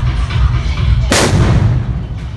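A single large firecracker going off about a second in: one loud bang with a short fading tail, over steady procession music with a heavy low rumble.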